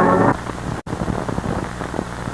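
The held last chord of the film's closing music, cut off about a third of a second in, followed by the crackle, clicks and low hum of a worn 16mm film soundtrack with nothing else on it. A brief total dropout breaks the noise just under a second in.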